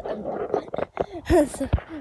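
A run of voice-like, animal-sounding cries whose pitch bends up and down, loudest a little past the middle.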